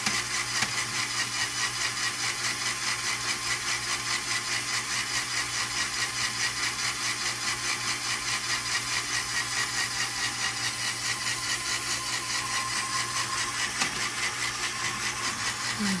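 Lego Technic electric motor driving a gear train, running steadily with a whir and a fast regular pulsing about four times a second as the mechanism works through the state that opens the wallet.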